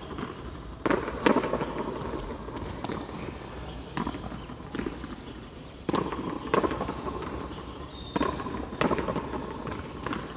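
Frontón a mano rally: a hard handball slapped by bare or gloved hands and cracking off the front wall and floor. About a dozen sharp, echoing impacts come at an irregular pace, roughly one a second.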